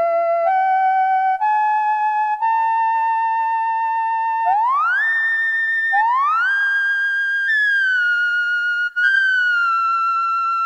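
Casio CZ-1000 phase-distortion synthesizer playing a single-note lead line. The notes step upward about once a second, then swoop up twice in fast glides and slide back down with vibrato: portamento.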